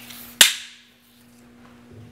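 A 2.5-inch steel nail jumping up from the bench and snapping onto the underside of a PYR 3x3 magnetic sweeper 6 inches above: one sharp metallic click with a short ringing decay, the magnet picking up the nail at that height.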